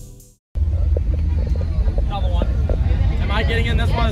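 Background music fades out, and after a brief silence a steady low rumble comes in, with people talking from about halfway through.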